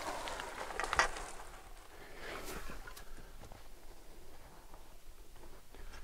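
Faint rustling of branches with a few light cracks of twigs as a hinge-cut tree is lowered slowly onto a smaller tree, its hinge holding so it settles softly.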